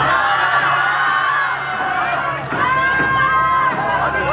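Crowd cheering, with many overlapping high-pitched shouts and screams and a steady low hum underneath.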